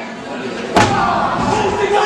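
One sharp impact in the wrestling ring about three-quarters of a second in, a wrestler's blow landing on his downed opponent, ringing briefly. Voices from the crowd go on around it.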